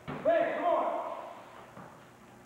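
A sparring kick landing with a sharp thud, then a voice calling out for about a second.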